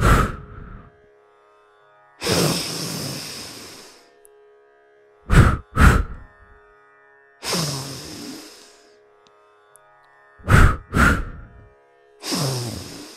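Moksha Kriya breathing: a long, strong inhale through the nose followed by two short, sharp exhales through the mouth, repeated about every five seconds, with three double exhales and two long inhales. Soft background music with steady held notes runs underneath.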